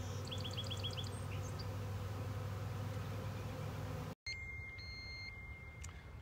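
A swarm of honeybees humming steadily around an open hive box, with a quick series of high chirps in the first second. After about four seconds the hum cuts off to quieter outdoor background with a faint steady high tone.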